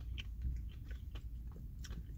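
A person chewing a bite of strawberries and cream ice cream bar with crunchy bits in it: faint, scattered mouth clicks and crunches over a low steady rumble.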